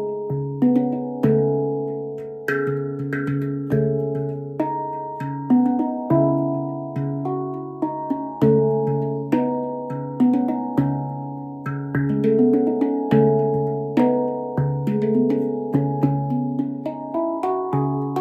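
A MASH handpan, a nine-note stainless-steel hand-played steel drum tuned to a C# Annaziska scale, played with the fingers: notes struck one after another, each ringing on and overlapping the next, over a low ding note that keeps returning.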